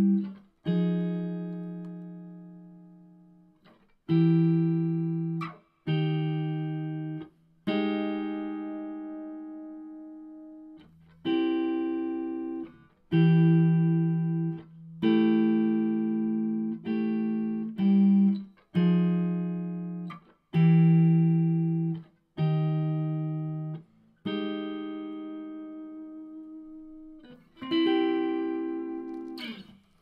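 Unaccompanied electric guitar in a clean tone, playing a slow jazzy chord progression: each chord is struck once and left to ring and fade, some of them for three seconds or more.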